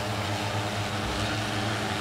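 Multirotor agricultural spraying drone's propellers humming steadily as it comes down low over the field to land.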